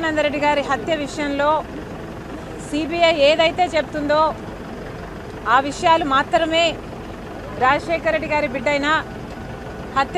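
A woman speaking in short phrases with pauses of about a second between them, over a steady low background hum.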